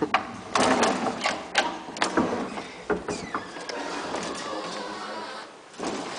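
The collapsible metal scissor gate of an old lift car rattling and clanking as it is worked by hand, with a burst of sharp metallic clicks in the first few seconds, then a steadier mechanical running noise that stops shortly before the end.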